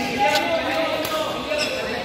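Badminton racket strikes on a shuttlecock during a doubles rally: a couple of sharp hits, one about a third of a second in and another near the end, with voices chattering in the hall.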